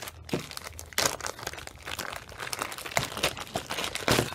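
Clear plastic bag crinkling in a rapid, irregular run of crackles as hands handle it.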